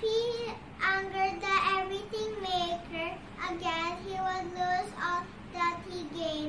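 A young girl singing alone in a high, clear voice, holding a series of sustained notes in short phrases.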